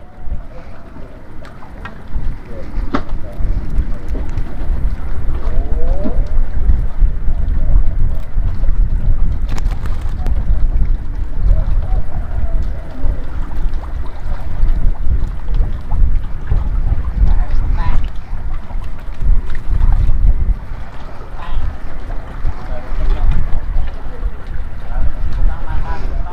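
Wind buffeting the microphone: a loud, uneven low rumble that rises and falls throughout, with faint voices in the background.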